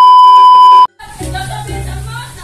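A loud, steady, high test-tone beep from a colour-bars editing effect, lasting just under a second and cutting off suddenly. It is followed by a low steady hum with background noise.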